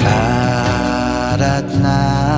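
Nepali Christian worship song: a voice sings a held, wavering line over sustained instrumental backing.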